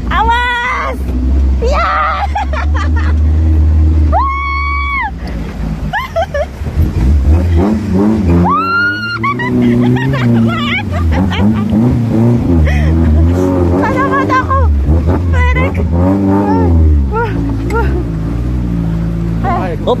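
Off-road jeep engine revving up and down as it crawls over a rough, rocky dirt track. Riders let out long calls over it, loudest about four and nine seconds in.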